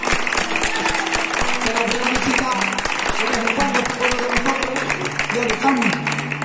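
An audience applauding, with voices and a flamenco guitar playing notes over the clapping. Low guitar notes come in near the end.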